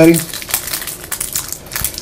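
Trading-card packaging crinkling and crackling in the hands as a new box is opened, a quick irregular run of rustles.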